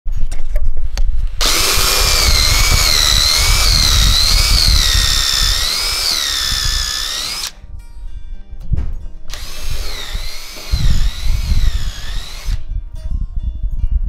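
Power drill boring into a wooden board in two runs: a long one of about six seconds, then, after a short break, another of about three seconds. The motor's whine wavers up and down in pitch as the load on the bit changes.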